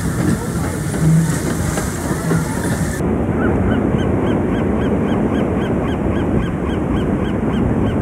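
A gull calling in a fast, even series of short cries, about three a second, over a steady wash of wind and surf. Before it, about three seconds of busy crowd and ride noise with two short low hoots, the first one loud.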